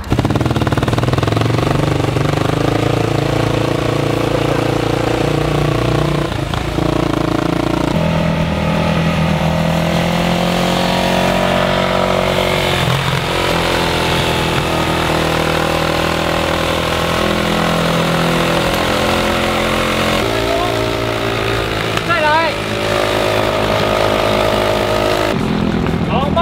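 A motorcycle engine running at a steady road speed, its pitch stepping to a new level at about eight seconds and again at about twenty seconds.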